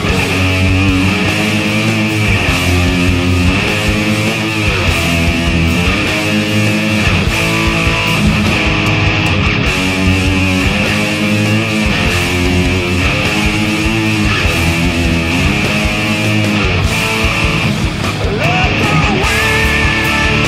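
Instrumental heavy-rock passage: distorted electric guitars playing a repeating riff over bass and drums, with bent notes coming in near the end.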